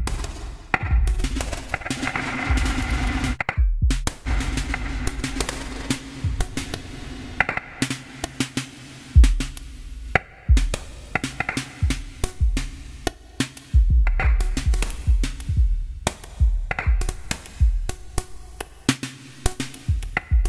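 Electronic drum pattern synthesized live on an Axoloti Core board: a looping beat of deep kicks and short percussion hits with some pitched tones, run through a reverb whose settings are being adjusted as it plays. The pattern cuts out briefly about four seconds in and again about ten seconds in.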